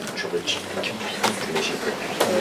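Classroom background: faint voices of students talking at a distance, with a few light clicks.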